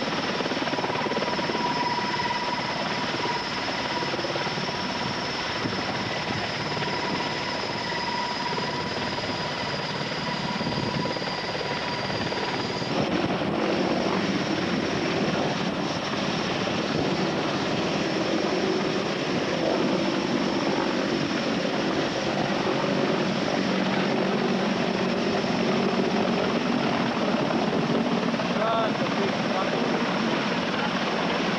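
Mil Mi-26 heavy-lift helicopter's turbines and rotor running loud and steady as it lifts off close by, with a steady high whine through the first half. After a cut near the middle, the same helicopter is flying past low.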